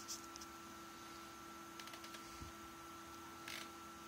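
Quiet room with a faint steady hum and a few soft clicks from a computer mouse as a web page is scrolled.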